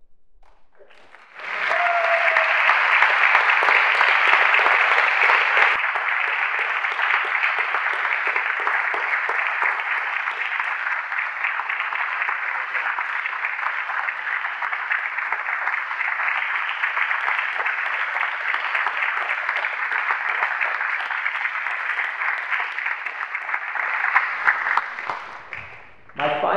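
Audience applauding steadily, starting about a second in and dying away near the end.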